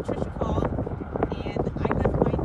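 Wind rumbling on the microphone, with a voice speaking under it that is hard to make out.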